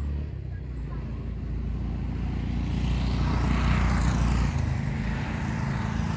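A motor vehicle's engine running nearby. It grows louder to a peak about four seconds in and then eases, as if the vehicle is passing.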